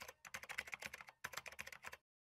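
Computer-keyboard typing sound effect: a faint, quick run of key clicks, with a short break about a second in, timed to on-screen text typing itself out.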